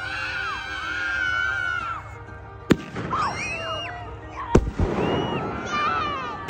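Backyard fireworks going off: two sharp bangs, one a little under halfway through and one about three quarters of the way, the second followed by crackling. High, wavering squeals rise and fall in pitch through much of it.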